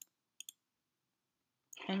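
Two short computer mouse clicks, about half a second apart, selecting a toolbar button, in an otherwise quiet room.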